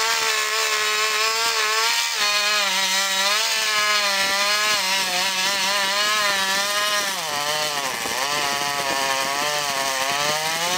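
Chainsaw running under load, cutting into the trunk of a sugar maple. The engine note wavers continually and drops lower for a few seconds about seven seconds in.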